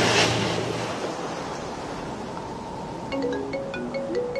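Sea surf rushing, loudest in the first half-second and then a steady wash, under light background music; a melody of short, separate notes comes in about three seconds in.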